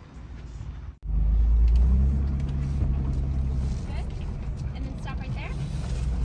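Ford Bronco heard from inside the cabin while it drives a dirt trail: a steady low engine and road drone that starts abruptly about a second in.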